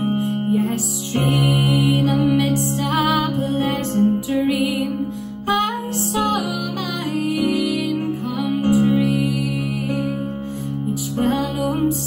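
A woman singing a Scottish folk ballad in traditional Aberdeenshire style, in long held and ornamented notes. Low instrumental accompaniment sustains chords beneath her, changing chord about a second in and again near the ninth second.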